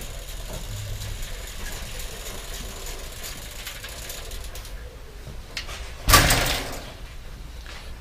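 A bicycle being handled at a workshop repair stand: faint rattles and clicks, then a short, loud clatter about six seconds in.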